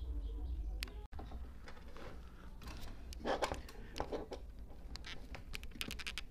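Low, quiet background: a steady low hum with scattered light clicks and rustles, with no shot.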